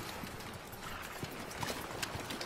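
Hooves clopping and stamping at irregular intervals, as of several horses or hoofed creatures shifting on the ground.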